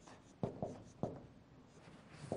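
Marker pen writing on a whiteboard: a few short, faint strokes of the felt tip on the board.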